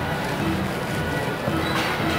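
Carousel ride music playing at a steady level.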